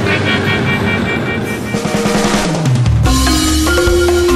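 Background music with drums: a quick drum roll builds while a low tone slides down in pitch, and a new passage with deep bass comes in about three seconds in.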